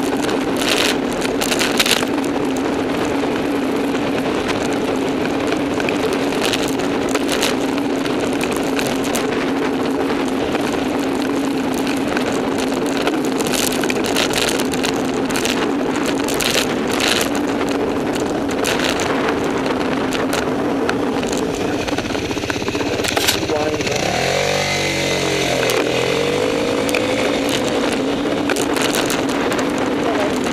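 On-board riding noise from a bicycle-mounted camera in city traffic: steady wind and road rumble with a constant low hum and scattered clicks and knocks from the road surface. A motor vehicle passes about 24 seconds in, its sound sweeping and wavering for a couple of seconds.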